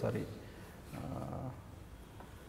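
A man's low, quiet hum, a drawn-out "mmm" while he pauses to think, about a second in, after a spoken word trails off.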